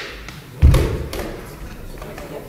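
A single heavy, low thud a little over half a second in, from the backsword sparring bout, with a couple of faint light taps around it.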